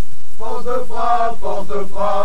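Loud hiss, then from about half a second in a man's voice chanting over it, a vocal passage in the album's closing oi/street-punk track.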